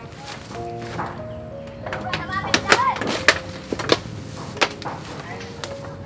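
Background music with a run of sharp snaps and cracks from about two seconds in, loudest around three seconds: banana leaves being torn and their stalks snapped off the plant.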